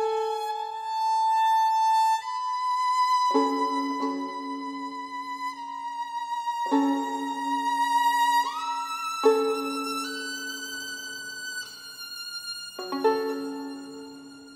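Solo violin, bowed, in a slow classical passage: long held high notes, with lower notes sounded beneath them as double-stops four times, roughly every three seconds.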